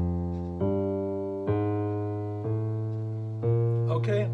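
Digital piano playing a slow walking bass line, a new low note struck about once a second, each ringing and fading before the next. It is the walking line through the F7 chord of a ii–V–I in B-flat, with a chromatic passing note leading to the chord's third.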